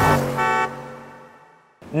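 Logo sting ending on a single held horn-like note, about two-thirds of a second long, which then fades away.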